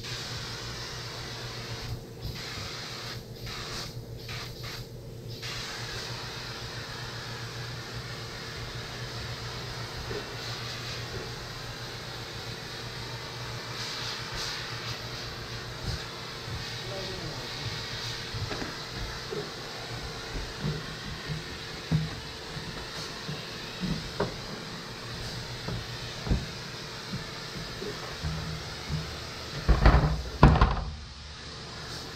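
Compressed air hissing from a hose-fed pneumatic tool, cut off briefly several times in the first few seconds, over a steady low hum. From about halfway on, scattered knocks and thumps join it.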